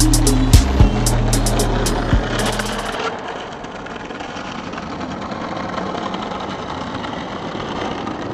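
A hip-hop beat with a heavy bass that cuts off about three seconds in, leaving the steady rumble of skateboard wheels rolling over brick paving.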